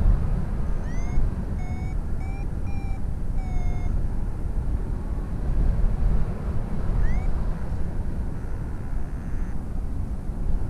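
Wind rushing over the microphone in flight, the loudest sound throughout. Over it a paragliding variometer, a Flymaster GPS SD, gives a rising chirp and then a run of short steady beeps about one to four seconds in, and another rising chirp about seven seconds in: its climb tone, signalling brief patches of rising air.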